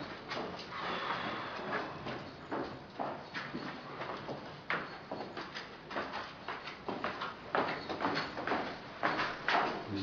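Footsteps of a person walking through a corridor and stairwell, irregular sharp knocks about one or two a second over the rustle of a handheld phone being carried.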